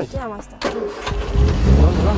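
Classic open roadster's engine starting about a second in, then running with a loud, low, steady rumble.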